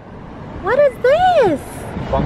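Road and traffic noise from a car driving along a street, with a person's voice calling out twice, rising then falling in pitch, about halfway through; the voice is the loudest sound.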